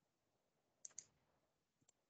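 Faint clicks of a computer mouse and keyboard on a near-silent background: two quick clicks about a second in, then a fainter one near the end.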